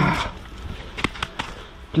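Three short, sharp knocks about a second in: a helmet bumping against a scooter's bodywork.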